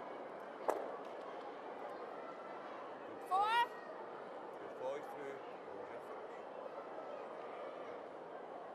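Curling arena ambience with a steady background hum. A single sharp knock comes just under a second in, and a short shouted call rising in pitch comes a little after three seconds, with a briefer call near five seconds.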